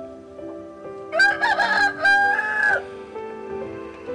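A rooster crowing once, a loud call of about a second and a half starting about a second in, with a brief break in the middle. Soft background music with sustained notes plays under it.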